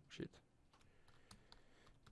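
Faint computer keyboard typing: scattered quiet keystrokes as a mistyped word is deleted and retyped.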